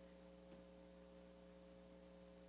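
Near silence: a faint, steady electrical hum of several constant tones under room tone.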